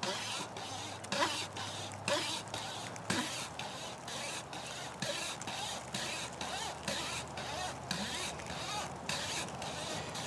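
Pocket wire saw looped around a sapling trunk, rasping through the wood in steady back-and-forth strokes, about two to three a second.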